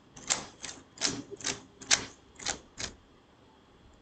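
Keys pressed on a computer keyboard: about eight separate keystrokes at uneven intervals, stopping about three seconds in.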